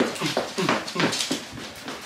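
A small dog yipping and whining excitedly in a quick run of short calls that fall in pitch.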